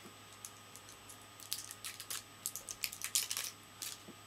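Plastic security seal on a hot sauce bottle being picked at and peeled off by fingers: a run of small sharp clicks and crackles, sparse at first and thickest in the second half.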